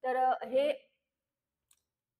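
A woman's voice speaking for just under a second, then complete silence broken only by one faint click near the end.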